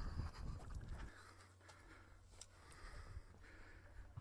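Faint footsteps on a paved road and handheld-camera rumble, loudest in the first second, then scattered light ticks over a steady low hum.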